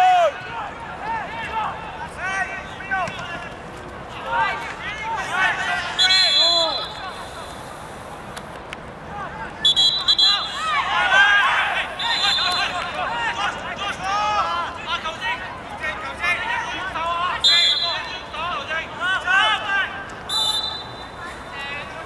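Referee's pea whistle blown in five short blasts, spread through the stretch, over the shouting voices of youth footballers.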